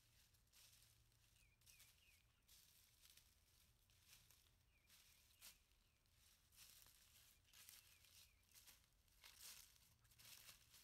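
Faint footsteps crunching and rustling through dry fallen leaves, uneven in rhythm and growing louder and closer in the second half.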